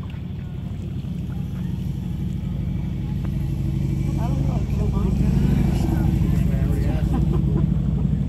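A motorcycle engine running with a low, pulsing note, growing steadily louder over the first five seconds and staying loud to the end.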